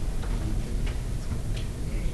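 Classroom room noise during a pause: a steady low hum with a few faint, scattered clicks.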